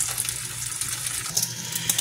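Turkey bacon sizzling in a frying pan: a steady crackling hiss, over a low steady hum.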